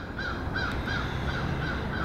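A bird calling outdoors in a quick series of short, evenly spaced notes, about four a second, over a low steady hum.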